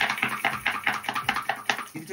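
A fast, even run of light clicks or taps, about six a second.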